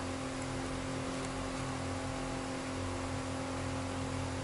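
A steady mechanical hum at a constant pitch, unchanging throughout, from a motor or fan running in the background.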